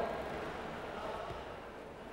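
Low, steady background noise with no distinct sounds: the room tone of a garage test bay.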